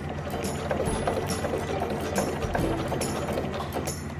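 Electric sewing machine running steadily, stitching a diagonal line through webbing and fabric, a continuous whir with rapid needle ticking. Background music plays under it.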